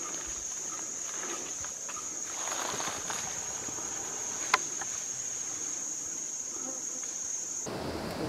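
Steady high-pitched chorus of forest insects, which stops abruptly shortly before the end. A single sharp click comes about halfway through.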